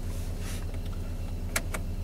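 Audi A3 1.8 20v four-cylinder engine idling steadily, heard from inside the cabin. Two quick clicks near the end come from the headlight switch being turned off.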